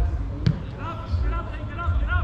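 Distant shouts from players on an outdoor football pitch over a constant low rumble on the microphone, with one sharp knock about a quarter of the way in.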